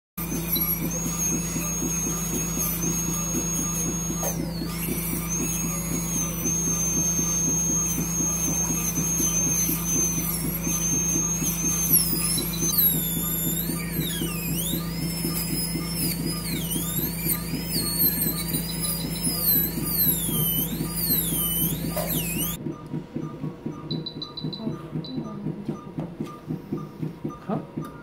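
High-speed dental handpiece (air-turbine drill) whining at a high steady pitch over a low hum; from about halfway in the pitch dips and wavers as the bur cuts into tooth during extraction. It cuts off suddenly about three-quarters of the way through, leaving a fainter, evenly repeating pulsing.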